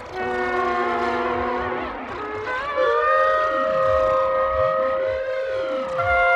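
Trombone played through live electronic effects. Several held notes sound together, then a new note slides in about two and a half seconds in, while slow sweeping tones rise and fall beneath it.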